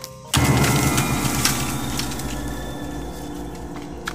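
A sudden loud burst of noise about a third of a second in, fading slowly over the next few seconds, with steady music tones beneath it.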